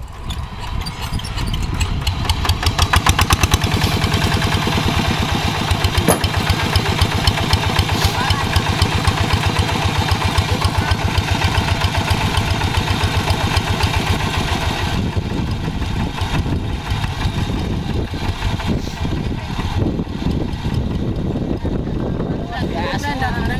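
Quick G3000 Zeva hand tractor's single-cylinder diesel engine starting up. It picks up speed over the first two or three seconds, then runs steadily with an even, rapid firing beat.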